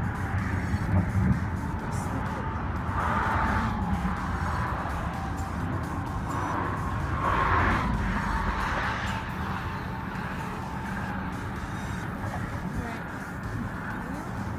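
Steady wind rumble on the microphone with traffic noise from the bridge, swelling twice, about three and a half and seven and a half seconds in, as vehicles pass.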